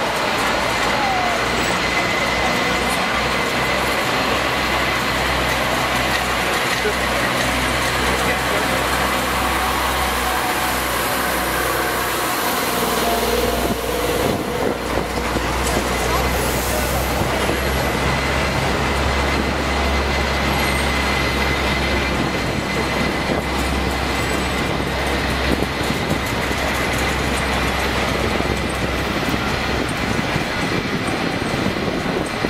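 Downtown street traffic: vehicles running and passing over a steady low rumble, with a thin steady whine and background voices.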